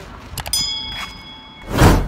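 Editing sound effects: a mouse-click sound and a bright bell-like ding from an animated subscribe button, then a loud whoosh transition near the end.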